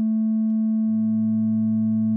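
Steady sine tone at 220 Hz (an A) from the FM-4 synthesizer. About a second in, a second sine an octave below, at 110 Hz, comes in as the second oscillator is turned up at a 0.5 ratio, adding to the tone rather than modulating it.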